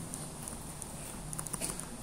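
Faint, quick clicks and light taps over a steady low hiss, made while an annotation is handwritten on a computer slide.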